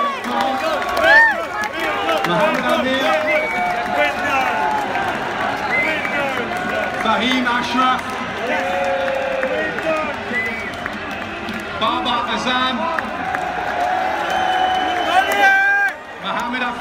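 Stadium crowd: many voices talking and shouting over each other at once, with a loud shout about a second in.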